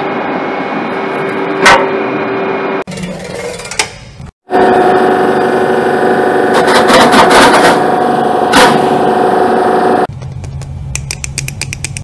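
Electrical and cooling equipment of a standing Railjet train humming steadily, a drone with a held tone, with an occasional sharp knock. After a brief cut the hum comes back louder with more fan-like noise. Near the end it gives way to a quieter sound with a quick run of clicks.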